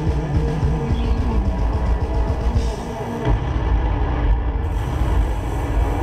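Rock band playing live at high volume, with a heavy, dense low end.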